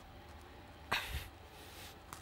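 A man's sharp exhale with a short low grunt about a second in, from the strain of doing push-ups, over quiet room tone.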